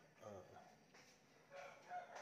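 A rooster crowing faintly over near silence.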